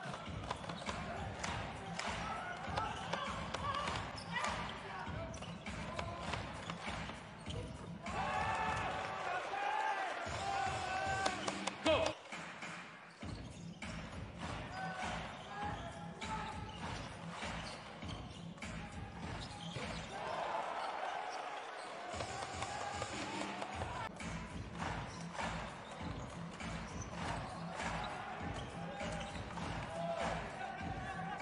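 Live basketball game sound: a basketball being dribbled on a hardwood court amid the arena's background noise, with a voice carrying through the hall at times and a brief sharp sound, the loudest moment, about halfway through.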